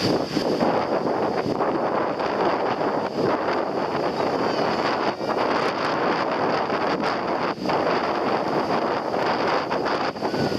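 Wind buffeting the microphone over the steady wash of breaking surf in shallow sea water.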